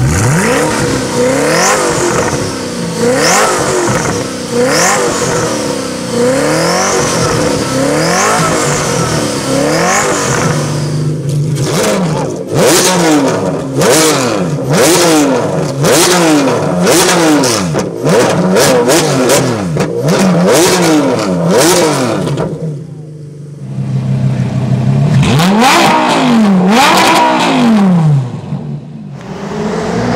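Three supercar engines in turn. A Koenigsegg's twin-turbo V8 is blipped over and over while standing still, and from about 11 s a Ferrari Enzo's V12 is revved in quick blips with many sharp cracks from the exhaust. Near the end a Lamborghini Gallardo's V10 pulls away, rising then falling in pitch.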